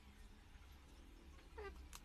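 Near silence, broken about a second and a half in by a short, faint pitched cry that bends in pitch, then a sharp click just after.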